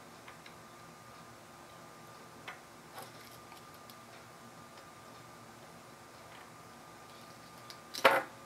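A few faint, sharp clicks and taps of small metal parts and wire being handled while soldering, over a faint steady high whine.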